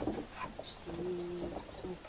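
A dove cooing once: one steady, even low note lasting about two-thirds of a second, in the middle of the stretch.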